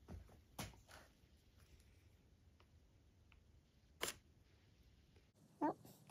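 Near silence broken by a few faint, brief clicks and taps from hands handling small work. The loudest click comes about four seconds in.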